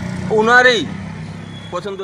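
A man speaking in short phrases over a steady low hum, the kind of hum a running engine makes.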